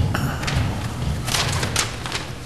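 A few dull thumps and knocks in a large room: a cluster just after the start and another about a second and a half in.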